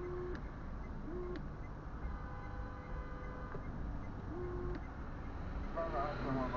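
Steady low rumble of a car idling at a standstill, heard from inside the cabin, with three short low hooting tones over it: one at the start, one about a second in and one about four and a half seconds in.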